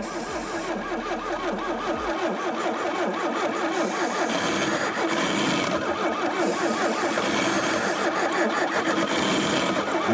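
An engine frozen at about minus 30 °C, its mineral oil as thick as honey, being cranked over steadily by the starter without catching.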